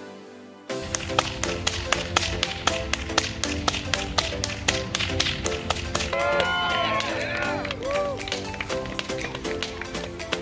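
Whips cracking sharply and repeatedly, several cracks a second, starting about a second in, over upbeat background music.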